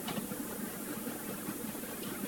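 Steady low hum and hiss of room tone, with no speech.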